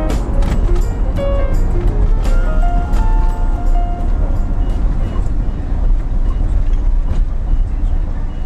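Steady low rumble of a taxi driving, heard from inside its cabin. Music with long held notes plays over it for about the first half, then fades out.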